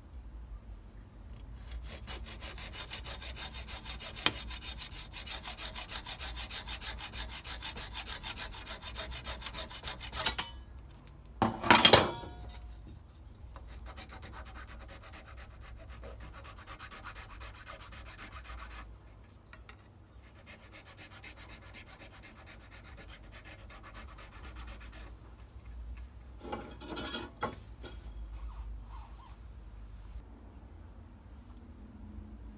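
A hacksaw cuts the corner of a small DC-DC converter's casing in a vise with fast, even strokes. A loud clank follows midway as the saw is put down. A flat file then rasps the corner down with quieter strokes until shortly before the end, trimming the casing so it fits inside a push-button box.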